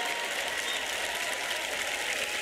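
Large audience applauding, a steady wash of many hands clapping.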